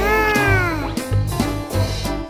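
A single meow-like cry of about a second, its pitch rising and then falling, over background music with a steady beat.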